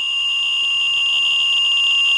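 Geiger counter (CDV-700 probe on a Ludlum 12 rate meter) squealing: one steady high-pitched tone, as the probe is held over a hot particle of spent nuclear fuel in a pinch of dirt, a sign of a very high count rate.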